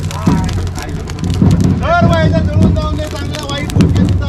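A group of men shouting and calling out around a bonfire, with one long drawn-out call held for about a second halfway through.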